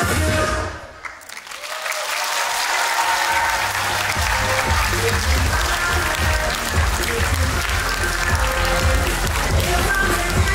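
Dance music cuts off about a second in and an audience starts applauding. The clapping builds and carries on while music with a strong bass comes back in underneath it.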